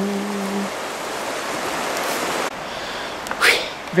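Steady hiss of a rocky river's rapids running beside the trail. The hiss drops abruptly about two and a half seconds in, and a brief burst of noise comes near the end.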